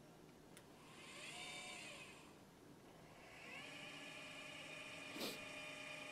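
Celestron 8SE mount's drive motors whining faintly as the telescope slews on hand-controller commands: a short run about a second in that rises and falls in pitch, then a longer, steadier run from about halfway on. A click comes just before the first run, and a louder one near the end.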